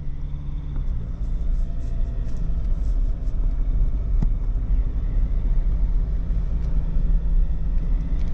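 Low, steady rumble of a Ford Ranger diesel pickup's engine and tyres, heard from inside the cabin as the truck picks up speed at low road speed.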